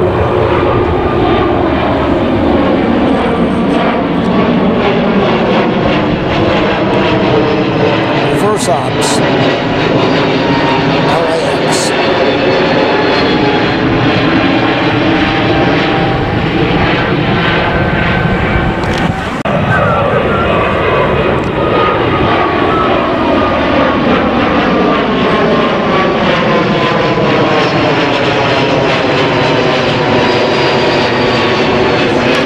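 Twin-engine jet airliners passing low overhead one after another: a loud, steady jet rumble with engine tones gliding down in pitch as each goes by. A second jet comes in about two-thirds of the way through.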